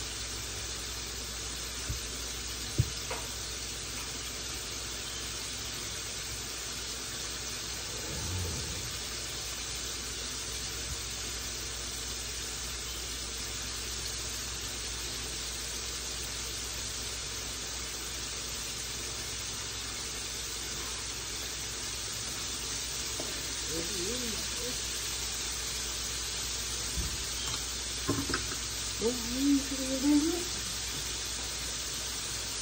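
Floured chicken pieces frying in hot oil in a skillet: a steady sizzle throughout. A sharp knock comes about three seconds in, and there are a few clatters and a brief voice near the end.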